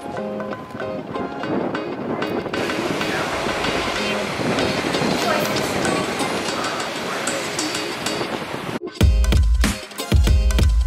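Background music, with a steady noisy hiss mixed in under it from a couple of seconds in. About nine seconds in it cuts suddenly to a beat with heavy bass.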